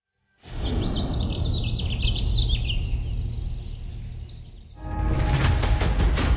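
Birds chirping, short repeated calls over a steady low hum, after a brief silence; about five seconds in, loud background music with sharp percussive beats starts.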